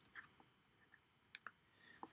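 Near silence with a few faint, short clicks: one about a fifth of a second in, and two close together about a second and a half in.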